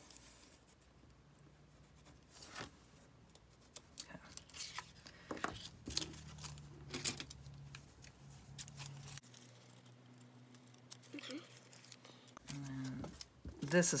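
Light paper-handling sounds: a pencil scratching as it traces on paper, then a snowflake-cut paper doily rustling as it is handled, with a few soft taps. A faint low hum sits underneath.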